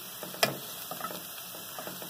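Chopped garlic frying in oil in a pot, a steady crackle of small pops and ticks as it is stirred with a silicone spatula, with one sharper click about half a second in.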